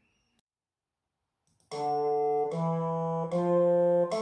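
After a pause, an electronic keyboard with a reed- or brass-like voice plays three steady held notes in turn, each just under a second long.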